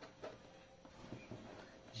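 Faint handling noises: a few soft rustles and small taps as a cut-open plastic jug stuffed with paper banknotes is shifted and pulled apart by hand.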